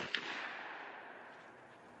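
The fading echo of a shotgun blast fired a moment earlier, dying away over about a second, with a faint click soon after the start. Then near silence.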